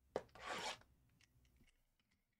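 Box cutter slitting the plastic shrink-wrap on a sealed trading-card hobby box: a sharp click, then a short rasp of about half a second.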